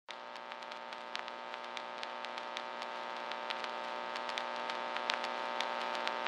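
A steady, many-toned electronic hum with scattered crackling clicks, slowly growing louder.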